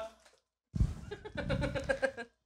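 Electric kettle heating water: a low rumbling hiss with fine crackling that starts about three quarters of a second in.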